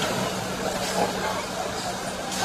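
A Ford Ranger pickup truck running as it pulls away slowly, with a steady engine hum under general outdoor noise.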